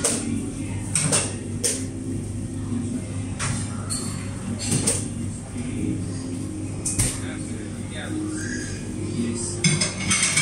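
Ceramic dishes and utensils clinking and knocking now and then in a restaurant, several separate clicks spread through, over a steady low hum and background murmur.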